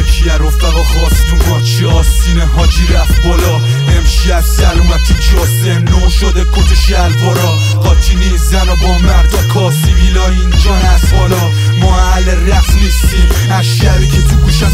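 Hip-hop track: a loud beat with a heavy bass line that repeats about every two seconds, with rapped vocals over it.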